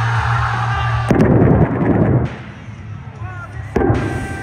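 Arena stage pyrotechnics going off: a loud blast lasting about a second, then a second sharp bang near the end, over entrance music.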